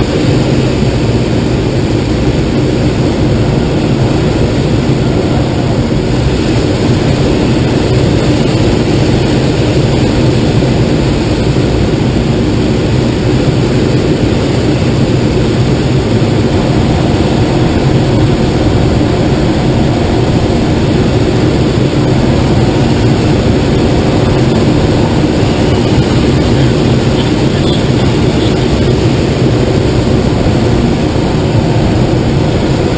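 Steady, loud rush of air streaming past a glider's canopy and cockpit as it descends on final approach to land.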